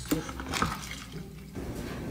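Quiet splashing of liquid, as drinks spill from a tray.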